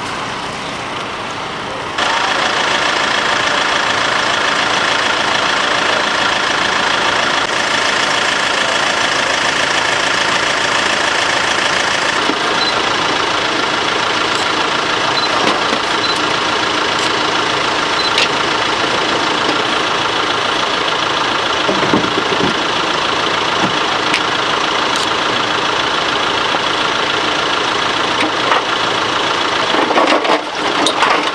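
An engine idling steadily, heard as an even, constant drone with hiss; it gets louder about two seconds in.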